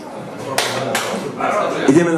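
Men's voices talking in a crowded hall, with two sharp slaps in quick succession in the first half.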